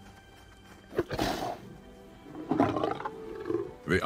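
Lions growling in short bursts: a sharp snarl about a second in and a second, more pitched growl about two and a half seconds in, over background music that fades away.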